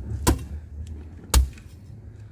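Two machete chops into a young green coconut, a second apart.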